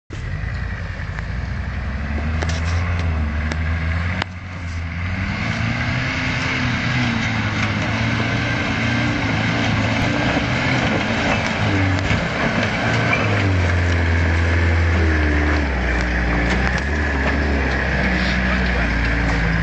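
A 4x4 pickup truck's engine working up a steep rocky dirt slope, revving up and down as it climbs, growing louder as the truck draws near.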